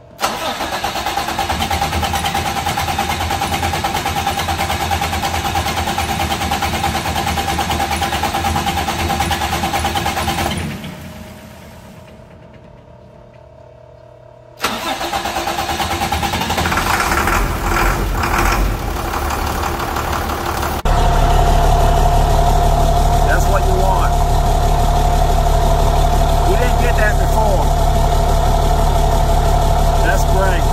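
International DT466 inline-six diesel engine cranked on the starter for about ten seconds without firing, then, after a pause, cranked again until it catches about twenty seconds in and settles into a steady idle. The slow start comes from the injector oil rail, drained for the injector change, having to refill before the engine will run; once running it fires on all six cylinders with the new injector.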